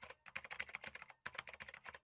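Computer-keyboard typing sound effect: rapid, fairly faint key clicks in two runs, with a short break just after a second in.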